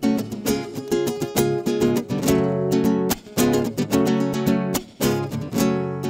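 Acoustic guitar strummed in chords: the instrumental opening of a song.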